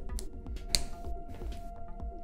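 Quiet background music with held notes, over a few light clicks and rustles as a microphone cable is handled; the sharpest click comes a little before halfway.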